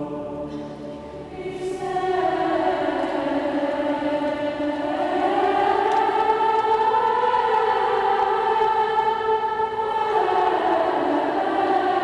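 Massed youth choirs singing together in a slow, chant-like line of long held notes. The melody rises about five seconds in and falls back near the end, with a lower sustained note under the opening couple of seconds.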